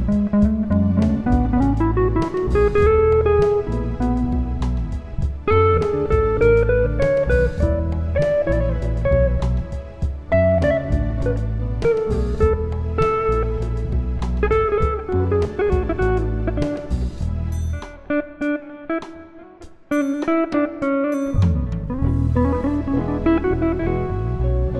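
Instrumental guitar music: plucked guitar notes, some bending in pitch, over a steady bass line. The low bass drops out for about three seconds past the middle, then comes back.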